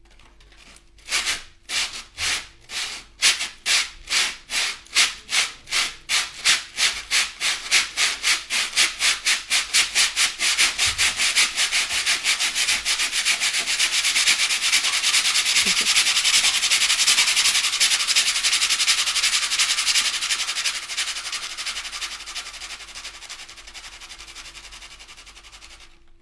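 A man imitating a steam locomotive pulling away, with his mouth and breath. The chuffs start slow, about one a second, speed up until they blur into a steady rush, then fade away into the distance.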